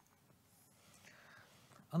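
Quiet pause in a spoken presentation: faint room tone with a soft breath-like sound, then a man starts speaking right at the end.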